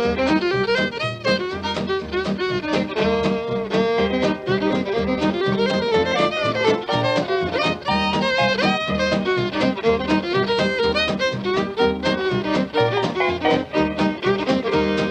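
Instrumental break of a 1940s country band record, with a fiddle carrying the melody over rhythm guitar and bass. It is heard as a transfer from a 78 rpm shellac disc.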